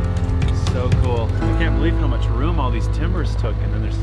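Background music dies away about a second and a half in, giving way to people talking over a steady low engine hum.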